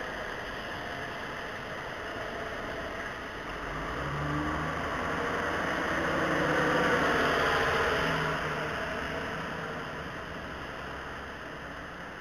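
Road traffic on a wet street: a passing vehicle grows louder to a peak around the middle and then fades away.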